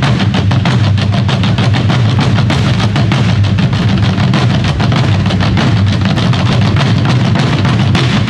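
A group of Korean barrel drums (buk) of an assorted-drum ensemble beaten with sticks in a fast, dense, continuous rhythm, with music.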